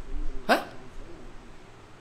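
A man gives a single short, sharp "huh?" about half a second in, then pauses in the quiet of the room.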